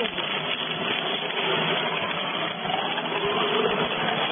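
Two-roll (twin-shaft) lumber shredder running, its toothed rollers turning and chewing into a wooden plank, giving a steady, dense mechanical noise.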